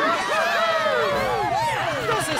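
A crowd of cartoon cats cheering, many voices rising and falling over one another. About a second in, a cartoon motorbike engine's low, even putter joins them.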